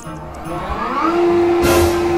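EPP pneumatic sewage ejector starting its pumping cycle: a rushing air noise builds up, a steady hum sets in about a second in, and a short burst of hissing air comes near the end.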